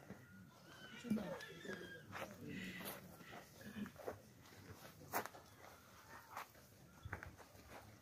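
Faint, distant voices talking in the open air, with a few light clicks.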